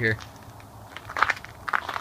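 Speech ends at the very start. In the second half come a few short scuffs and rustles, footsteps and clothing moving as someone steps closer.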